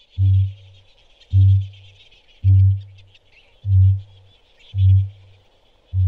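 Male kakapo booming, its mating call to attract females: a deep, low boom repeated about once a second, six times.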